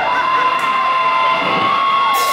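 Electric guitar feedback through a stage amplifier: one steady high whine, held with small shifts in pitch.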